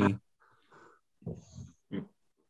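A person's faint laughter and breaths in a few short bursts over a video call.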